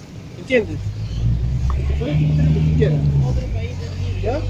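Low, steady rumble of a vehicle engine running close by, coming in about a second in, with short bits of voices over it.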